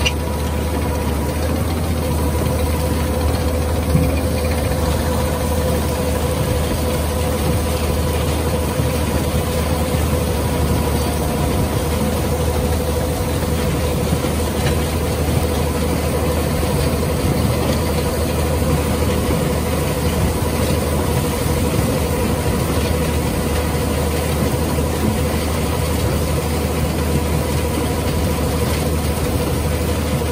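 AVR potato harvester, fitted with an onion pickup roll, running as it lifts onions: a steady low engine drone under the running conveyor webs, with a steady whining tone. A single louder knock comes about four seconds in.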